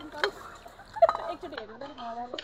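Lively human voices, mostly laughter with bits of excited chatter, the loudest burst about a second in.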